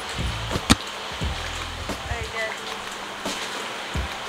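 Faint voices and soft music-like tones over a low outdoor rumble, with a single sharp tap about three-quarters of a second in.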